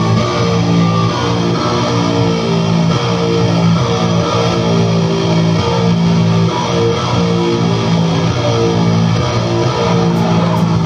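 Live rock band playing loudly: electric guitar and bass guitar sounding a repeating riff of held notes.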